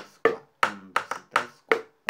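Two thin sticks tapping upturned plastic containers used as improvised percussion, playing the candombe pattern "1, 2 and 3, 4" at song tempo: a quick, even run of hollow taps, about seven in two seconds, with a higher and a lower sound.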